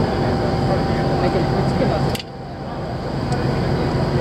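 Steady low hum of a moored ship's diesel engines, mixed with the indistinct voices of people nearby. About two seconds in a sharp click is heard, after which the noise briefly drops and then slowly builds back.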